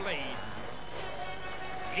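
Motocross bike engine: its note falls sharply right at the start, then holds a steady pitch from about a second in, over a constant background rumble.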